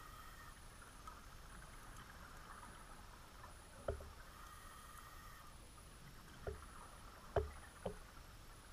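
Scuba breathing heard underwater: a faint regulator hiss on the inhale, then short bubble bursts from the exhale, four of them in the second half.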